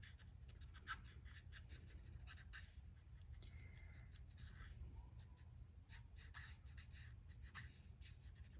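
Faint scratching of an Ohuhu alcohol marker nib on cardstock as small areas are coloured in with short, scattered strokes.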